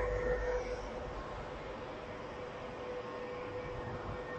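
Steady mechanical hum of factory air-treatment machinery, a fan or blower drone with one constant tone running through it.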